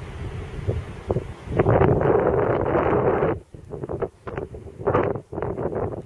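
Wind buffeting the microphone in uneven gusts, with a long loud gust from about one and a half to three and a half seconds in and a shorter one near the end.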